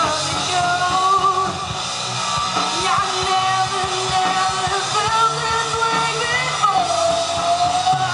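Live rock band playing through the stage speakers: electric guitars and drum kit under a lead singer holding long, gliding sung notes.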